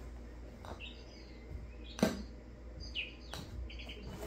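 A sharp click about halfway through and a softer one about a second later, as a golf club knocks a ball into place on an artificial-turf hitting mat. Short, high bird-like chirps sound now and then.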